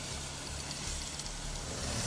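Motorcycle running steadily on the move, its low engine hum under a steady rush of wind over the microphone.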